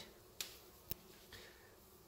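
Near-quiet room tone broken by two short clicks about half a second apart in the first second.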